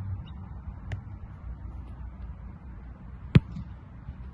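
A single sharp, loud thud of a boot striking an American football in a punt, about three and a half seconds in, with a fainter click about a second in.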